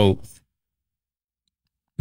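A voice trailing off in the first half-second, then complete silence for about a second and a half, with speech cutting back in abruptly at the very end.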